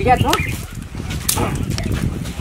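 Several people giving short shrieks, yelps and excited cries during a playful scuffle, with laughter mixed in and a sharp shrill cry near the middle. A steady low rumble runs underneath.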